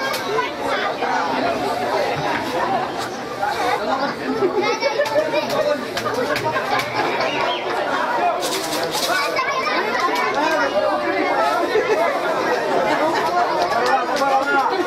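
Several voices at a football match talking and shouting over one another, too jumbled for any words to stand out.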